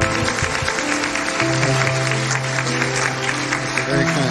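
Audience applauding, with background music playing over it.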